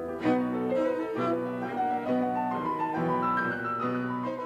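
Recorded classical music played back in a hall: cello and piano in a dramatic outburst in a minor key, with struck piano chords about once a second under sustained cello notes and a rising line near the end.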